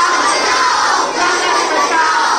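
A large crowd of children shouting together, one loud sustained shout of many voices.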